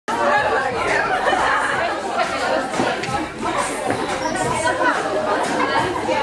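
Several people talking at once: overlapping chatter that echoes in a large room.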